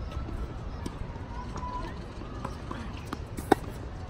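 A single sharp crack of a tennis racket striking the ball about three and a half seconds in, over a low outdoor rumble and light scattered taps of players' feet on a hard court.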